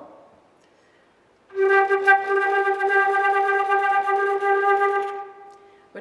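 Concert flute holding a single G with flutter tongue, fast heavy vibrato and smorzato (rapid lip closings) all at once, giving a grainy, pulsing tone. The note begins about a second and a half in, holds for about three and a half seconds, and fades away shortly before the end.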